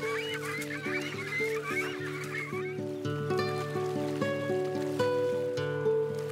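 Young cormorants in the nest giving a dense chatter of short, squeaky calls for about the first three seconds, over background music of held low notes. After the calls stop, the music carries on alone with plucked, ringing notes.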